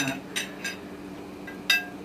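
Metal utensils clinking against china plates and serving dishes: four sharp clinks with a short ring, the loudest near the end.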